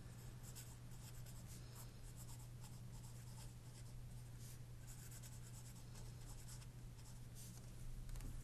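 Faint scratching of a pencil on paper as a short phrase is handwritten, stroke after stroke, over a steady low hum.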